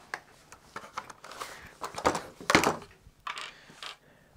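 Parts of a Traxxas XRT RC truck's chassis being handled and set down on a workbench: a series of clunks and knocks, the loudest about two and a half seconds in.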